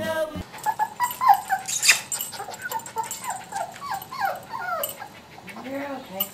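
A puppy whimpering: a quick run of short, high whines, each falling in pitch, a dozen or more over several seconds, with a brief sharp noise about two seconds in.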